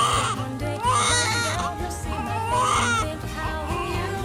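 Newborn baby crying in a series of rising-and-falling wails, about one a second, over background music.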